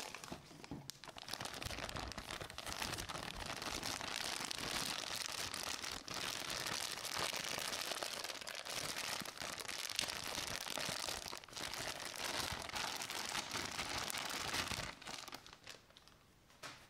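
Thin clear plastic bag crinkling and rustling as hands tear it open and pull a plush toy out of it, starting about a second in and stopping just before the end.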